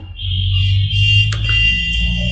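A loud, steady high-pitched tone over a low hum, starting just after the speech stops. It holds one pitch, and shortly after it ends a second, lower set of steady tones joins it.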